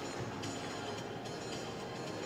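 Music playing over a rink's PA system, mixed with a steady, dense background rumble of arena noise.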